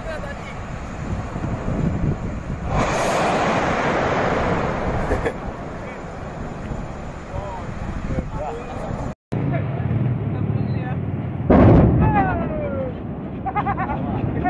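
A sudden loud blast, a tank exploding on a burning tanker, about three quarters of the way through, over outdoor noise and people's voices. Earlier, a surge of rushing noise lasts a couple of seconds.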